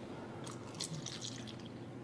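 Water poured from a plastic pitcher into a small plastic cup, a faint trickle and drip that starts about half a second in.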